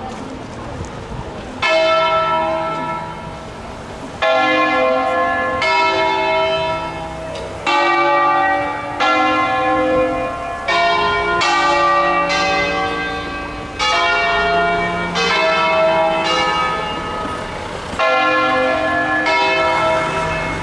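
A six-bell ring tuned in C, swung full circle on wheels and rung by hand. The bells strike one after another at uneven intervals, about one every second or two, each stroke ringing on into the next, with bells of different pitch taking turns. The first stroke comes about a second and a half in, after a fading hum from the strokes before.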